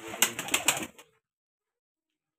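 A white homer pigeon held in the hands makes a short burst of pigeon sound, about a second long, that then stops.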